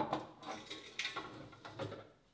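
Dry bread flour mix poured from a cup into a bread machine's baking pan: a soft rustle with several light knocks, the first and loudest right at the start.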